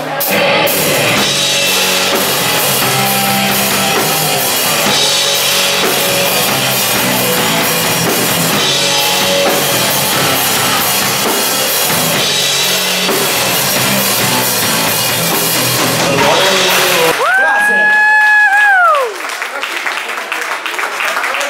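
Live rock band playing: drum kit, electric bass and electric guitar together. About three seconds before the end the band stops and a single held note rings out, then slides sharply down in pitch as the song ends.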